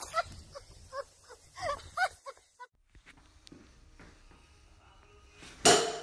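A woman laughing in short, rising-and-falling bursts for about two seconds. A quieter stretch follows, and a sudden loud noise comes near the end.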